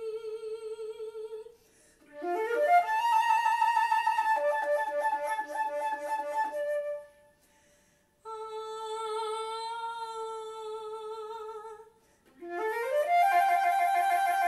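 Concert flute played solo: long held notes with vibrato, separated by short pauses, alternating with quick rising runs that end in several pitches sounding at once.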